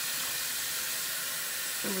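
Kitchen faucet running in a steady hiss, water splashing into a stainless steel saucepan and sink as the pan is rinsed out and filled for boiling.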